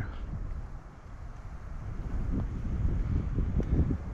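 Wind buffeting the microphone of a handheld GoPro action camera: an uneven low rumble that gusts stronger toward the end.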